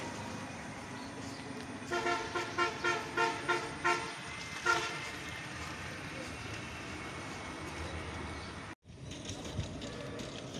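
A vehicle horn tooting in quick repeated short beeps, about seven in two seconds, then one more toot, over steady roadside traffic noise.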